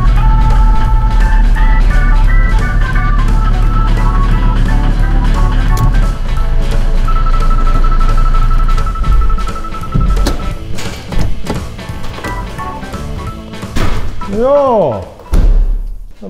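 Blues music with a steady bass line and drums.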